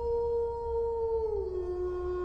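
A long howl-like tone, evidently a between-stories transition effect: it holds one pitch, then steps down to a lower, steady pitch about a second and a half in, over a steady low hum.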